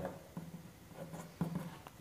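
Pen writing on paper: faint, irregular scratching strokes as letters and symbols are written.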